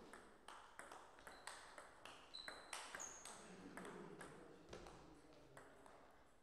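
Table tennis ball clicking off the bats and the table in a rally, a faint run of sharp ticks about two to three a second at uneven spacing.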